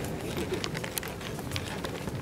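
Irregular sharp clicks and taps, about a dozen in two seconds, over a low background murmur: the handling noise of a group of people shuffling and moving about on a wooden stage.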